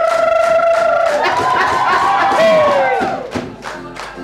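A group of young voices singing together, holding a long note, then breaking into rising and falling whoops and cheers that die down about three seconds in, over handclaps.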